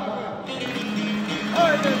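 Long-necked plucked lute ringing on through the last notes of a folk song after the singing stops, with a short voice near the end.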